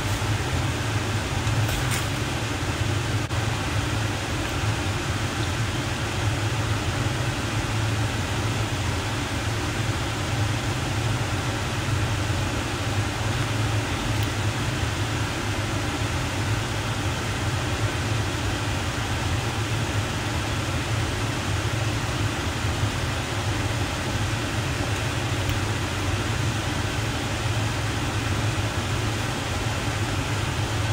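A kitchen fan running with a steady whirring and a low hum, over a wok of stir-fried noodles.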